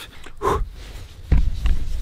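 Handling noise on a handheld camera as its lens is wiped with cloth: a short breathy sound about half a second in, then a low thump and low rumble a little after a second.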